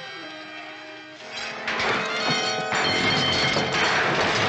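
Background music holding a sustained chord, then from about a second and a half in the clatter and crash of a puzzle cage of metal rods collapsing, its rods falling to the floor, over the music.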